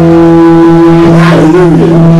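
Loud amplified electric guitar holding one sustained, droning note with steady overtones. About a second and a half in, a short wavering slide in pitch rides over the drone.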